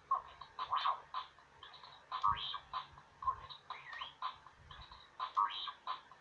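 Star Wars R2-D2 Bop It toy playing its electronic R2-D2-style beeps and warbling whistles during a game, in a pattern that repeats about every three seconds.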